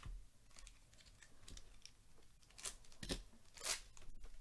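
Trading cards and a foil card-pack wrapper being handled: a string of short rustles and clicks, the loudest three close together in the last second and a half.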